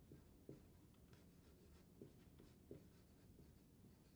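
Faint sound of a dry-erase marker writing on a whiteboard: soft rubbing strokes with a few small taps as the tip meets the board.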